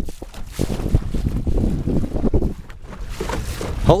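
Water splashing irregularly against the bow of a small cat-yawl sailboat under way, with wind buffeting the microphone.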